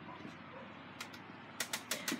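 A few light clicks and taps of small plastic makeup items being handled: two about a second in, then a quick run of four or five near the end.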